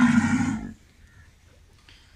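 A head of cattle giving one short, low call lasting well under a second.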